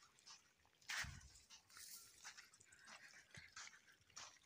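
Near silence: faint scattered rustling, with one soft noise about a second in.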